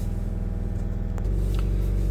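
Chevrolet Cruze 1.7 four-cylinder turbodiesel running at steady high revs, heard inside the cabin; a little past a second in, the note steps up and gets louder as the revs are raised toward 3,000 rpm. The engine is being held at revs to burn off the cleaning chemical after a blocked DPF has been treated.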